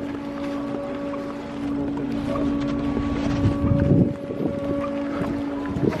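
A boat engine running steadily at the dock, a constant hum with a held pitch, with wind buffeting the microphone. The hum cuts off abruptly just before the end.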